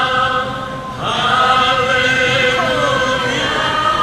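A group of voices singing a worship song in long held notes, with a brief dip about a second in before the next phrase begins.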